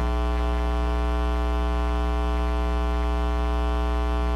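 Steady electrical mains hum, a constant buzz with many overtones and no change in pitch or level.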